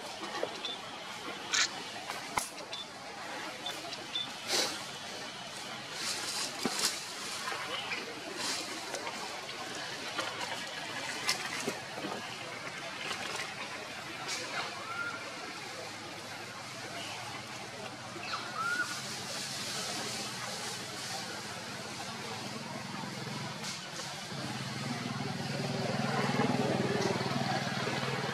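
Outdoor background of distant people talking, growing louder over the last few seconds, with scattered sharp clicks and two short faint chirps.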